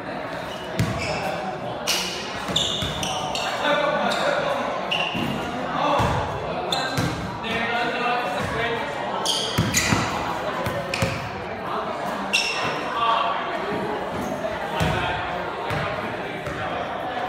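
Basketball bouncing on a hard gym floor, in irregular thuds, among players' indistinct voices and calls.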